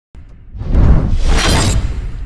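Cinematic intro sound effect: a shattering crash over a deep low rumble, swelling in from silence about half a second in and staying loud for over a second.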